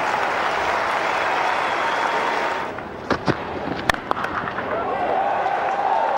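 Cricket ground crowd applauding, dying away about three seconds in. A few sharp knocks follow, the sharpest about four seconds in, the crack of bat striking ball, and the crowd noise swells again near the end as the ball is struck high toward the deep fielder.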